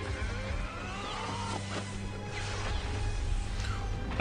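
Anime film soundtrack playing: music and effects, with a steady low hum under several rising pitch sweeps and a few sharp hits, swelling slightly towards the end.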